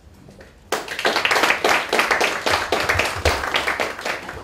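An audience applauding, breaking out suddenly under a second in and carrying on as dense, steady clapping.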